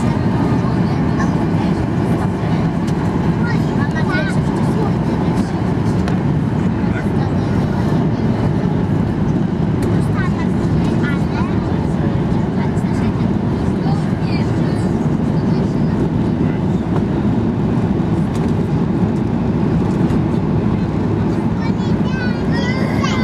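Steady, loud cabin roar of a Boeing 737-8200 on its landing approach, heard at a window seat over the wing: the engines and the rush of air blend into an even, low rumble.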